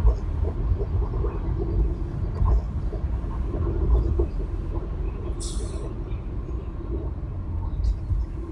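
Steady low rumble of a car driving through city streets, with a short hiss about five and a half seconds in.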